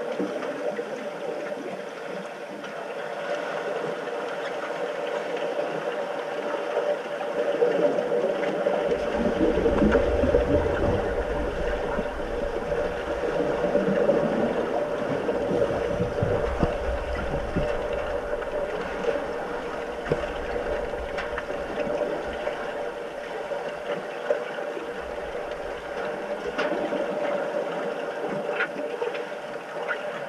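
Muffled underwater sound of a swimming pool heard through a submerged camera, with a steady hum throughout. A deep rumble of churning water builds up about nine seconds in and eases off again after about twenty-four seconds, and a few faint clicks come through.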